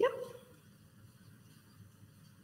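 A single short spoken "yep" at the very start, then quiet room tone.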